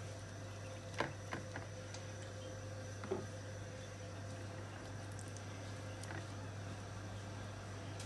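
Steady low hum of a washing machine running in the background, with a few soft knocks of a pastry brush against the tray, about one second in and again about three seconds in.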